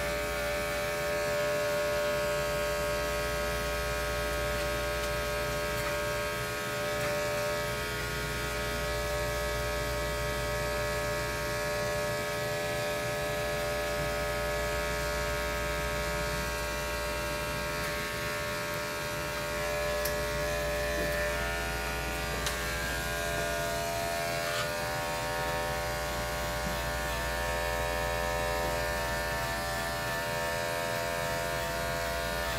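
Electric pet grooming clippers running with a steady buzz while clipping a dog's coat.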